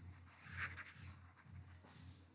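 Faint scratching and rubbing of a stylus moving over a drawing tablet as the board is erased, strongest about half a second in, over a low electrical hum.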